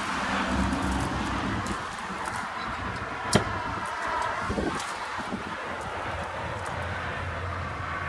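Steady outdoor background noise with a low hum that fades out about a second and a half in, and a single sharp click about three and a half seconds in.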